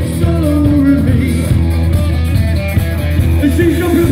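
Live rock band playing loud amplified music with electric guitar, bass guitar and drums, and a lead singer singing over it.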